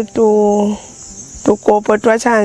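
A woman speaking in short phrases, with a pause in the middle, over the steady high-pitched chirring of insects, typical of crickets.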